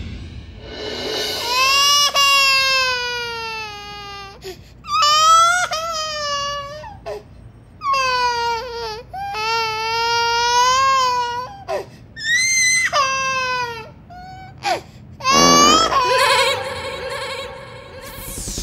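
A high-pitched wailing, crying voice in about five long, drawn-out cries, each sliding down in pitch at its end, in the manner of comic sobbing.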